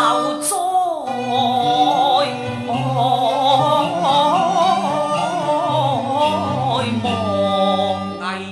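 Cantonese opera singing: one voice drawing out a slow, wavering, ornamented line over the instrumental accompaniment.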